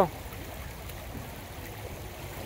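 Steady outdoor background noise: an even hiss with a low, unsteady rumble and no distinct events.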